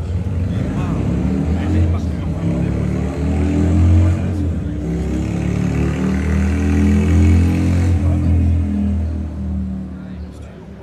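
A motorcycle engine running loudly and being revved up and down a few times. It starts abruptly and dies away near the end.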